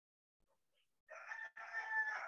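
A rooster crowing faintly in the background: one drawn-out crow that starts about halfway in and runs on to the end.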